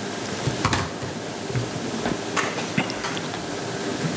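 Steady, fairly loud hiss of room noise with a few scattered faint clicks. The hiss starts abruptly as the audio feed changes.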